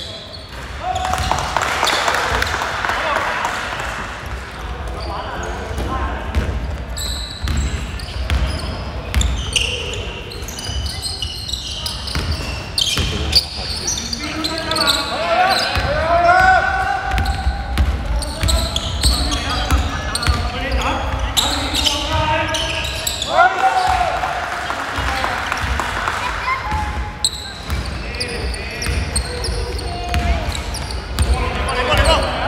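Basketball game sounds in a large, echoing gym: a ball bouncing on the hardwood court with players' voices calling out.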